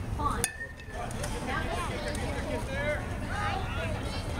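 A bat hitting a pitched baseball with one sharp crack about half a second in, followed by spectators shouting and cheering in several voices.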